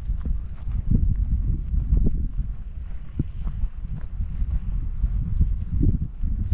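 Footsteps of a person walking on a grassy path, heard as dull thuds at uneven intervals over a steady low rumble.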